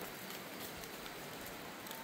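Faint, even rain-like patter of small stones and grit trickling down a crumbling limestone-shale slope.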